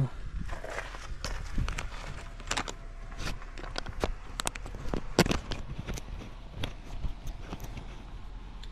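Irregular clicks, knocks and crunches of a body-worn action camera being handled while feet shift on gravel, with one sharper knock about five seconds in.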